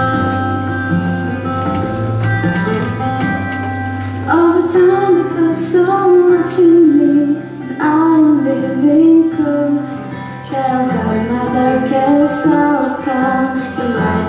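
A woman singing solo into a handheld microphone over instrumental accompaniment. The accompaniment plays alone for about the first four seconds before her voice comes in.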